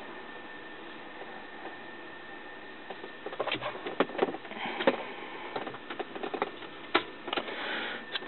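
Handling noise in a car cabin: a steady low hiss, then scattered clicks and knocks from about three seconds in as the ignition key is turned and the tablet is handled, with one sharp click about seven seconds in.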